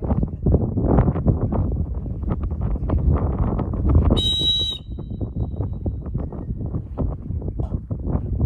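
Wind buffeting the microphone, with one short, sharp blast of a dog-training whistle about four seconds in: the single-blast sit whistle that stops a retriever running a blind.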